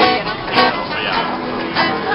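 An acoustic guitar being strummed, with people's voices over it.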